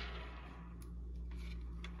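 A few faint light clicks of the sewing machine's plastic top lid being handled and turned over by hand, over a low steady hum.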